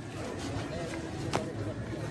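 Faint voices of people talking at a distance over low outdoor background noise, with one sharp click a little over a second in.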